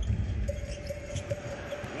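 Arena crowd noise during live basketball play, with a steady held tone lasting a little over a second in the middle and a few short sharp knocks.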